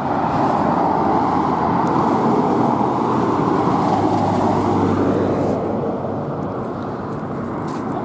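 Highway traffic passing close by: a steady noise of tyres and engines, with a low engine hum for a few seconds in the middle, easing slightly toward the end.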